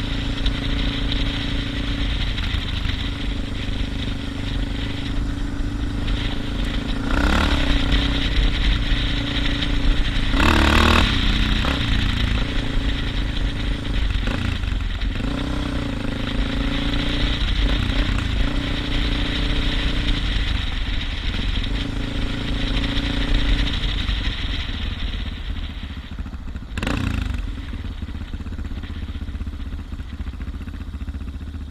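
Suzuki DR650's single-cylinder four-stroke engine running under way on a dirt road, with steady road and wind noise. Its note dips and rises around the middle, and three brief bursts of noise break through, the longest about a third of the way in.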